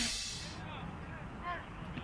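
Rock music fades out in the first half second, leaving faint open-air field ambience with distant voices. One brief voice call rings out about a second and a half in.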